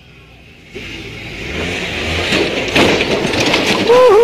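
Polaris Ranger side-by-side's engine revving as it climbs a rock ledge, growing steadily louder from about a second in, then the vehicle rolling over with clattering impacts and people shouting near the end.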